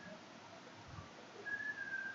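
Faint room hiss, then a short, high, steady whistle-like tone about one and a half seconds in that drifts slightly down in pitch.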